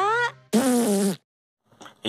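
Cartoonish vocal sound effect: a short call that rises sharply in pitch, then a longer call that sinks slightly and cuts off abruptly a little over a second in.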